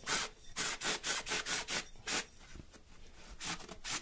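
A sharpened tube worked back and forth into a block of aquarium filter foam, cutting a hole: short rasping strokes, about four a second, then a pause of about a second and two more strokes near the end.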